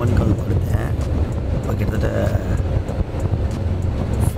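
Steady low rumble of a sleeper bus, heard from inside one of its berths.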